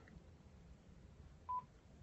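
A single short electronic beep, one steady tone lasting a fraction of a second, about a second and a half in, over otherwise near-quiet room tone.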